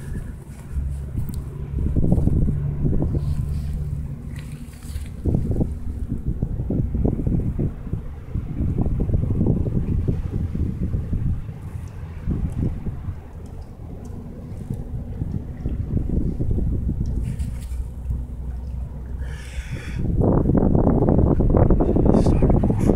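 Wind buffeting the camera microphone: a low rumble that swells and fades in gusts, with a stronger gust near the end.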